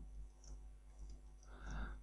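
Faint computer keyboard typing, with scattered soft key clicks. A brief soft rush of noise comes about a second and a half in.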